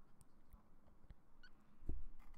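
A few faint clicks from a computer mouse against quiet room tone, with a soft low thump near the end.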